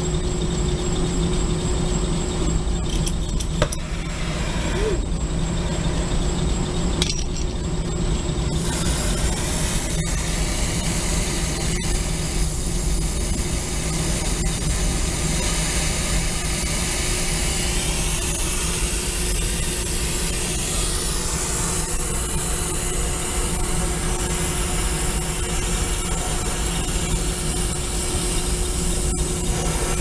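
A steady low mechanical drone throughout. About eight seconds in, a loud steady gas hiss starts and keeps going: a brazing torch lit and burning on refrigeration copper.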